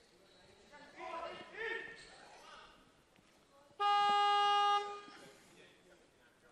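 Weightlifting competition attempt-clock buzzer sounding one steady electronic tone for about a second, about four seconds in. This is the warning that 30 seconds remain for the lifter to start his attempt. Faint voices come shortly before it.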